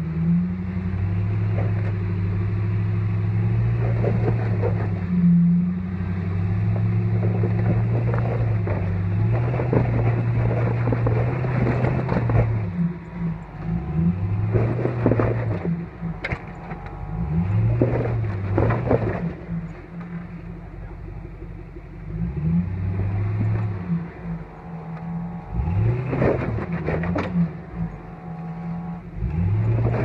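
Jeep Grand Cherokee WJ engine working a steep rock crawl on 42-inch tires: it revs up and drops back in repeated short bursts, easing off for a few seconds past the middle. Scrapes and knocks of tires on rock are mixed in.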